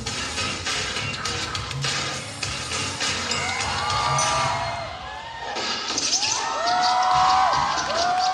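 Dance music with a strong beat played over loudspeakers, joined from about three seconds in by an audience screaming and cheering. The bass drops out briefly near the middle, and the shrill cheering grows loudest in the last few seconds.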